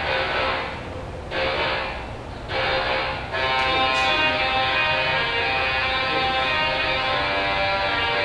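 A musical Tesla coil played from a keyboard, its electric discharge buzzing out the notes of a tune. There are a few broken phrases with short gaps in the first three seconds, then steady held notes.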